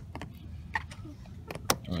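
Old, failed silicone sealant being peeled by hand off a plastic pond tub around a pipe fitting: a few small crackles and sharp snaps, the loudest near the end.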